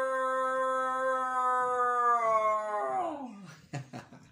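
A man's voice imitating a coyote howl: one long howl held on a steady pitch, then sliding down and trailing off about three seconds in.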